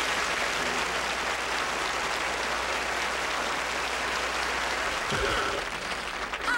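Audience applauding steadily after a band's song ends, dying away about five seconds in.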